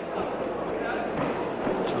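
Steady murmur of a crowd in a large hall, with faint voices in it.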